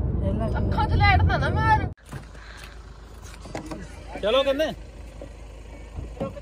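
Low rumble of a car's cabin on the move, with a woman's voice over it, cut off suddenly about two seconds in. Then a quieter roadside background with a short burst of voice.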